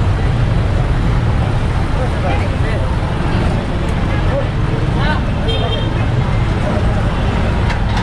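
Truck engines running steadily close by amid street traffic, with scattered voices in the background.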